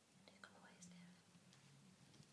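Faint whispering voice with a steady low hum underneath, and a brief high thin squeak about halfway in.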